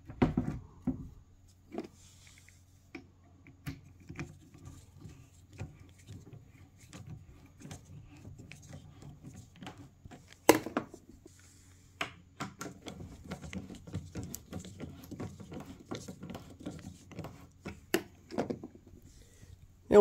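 Hand screwdriver driving wood screws into the pre-drilled holes of a particleboard bookcase panel. A run of small clicks and knocks, with a sharper knock about ten seconds in and the clicking densest in the second half.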